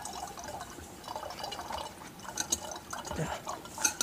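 Concentrated bleach trickling slowly and irregularly from a partly frozen plastic jug into a glass flask, with a few light clicks. Only the unfrozen sodium hypochlorite solution drains out, while the frozen water stays behind as an ice chunk in the jug.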